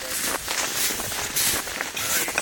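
Footsteps crunching through snow on lake ice, an irregular run of steps.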